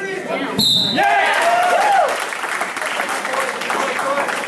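A thump on the wrestling mat, then a short, sharp blast of a referee's whistle about half a second in, stopping the action. Spectators shout over it.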